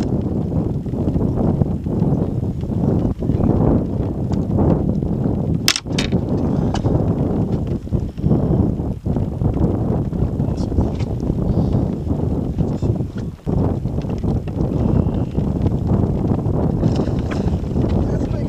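Wind buffeting the action camera's microphone: a loud, unsteady low rumble throughout. Two sharp clicks come close together about six seconds in.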